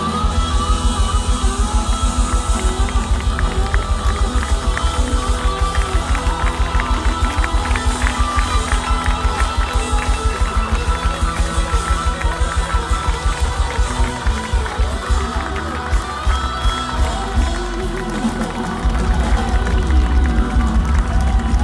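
Live rock band playing through a PA, heard from the audience, driven by a fast, steady low beat. The beat loosens about two-thirds of the way through and comes back in full near the end.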